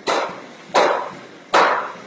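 Three sharp, loud strikes, one about every 0.8 seconds, each trailing off briefly: the blows of a steady beating or hammering rhythm.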